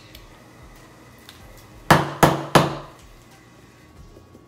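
Three sharp knocks in quick succession, about a third of a second apart, halfway through: a hard object struck against a hard kitchen surface.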